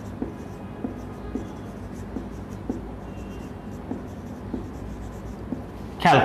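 Marker pen writing on a whiteboard: small taps and strokes roughly twice a second as the letters are drawn.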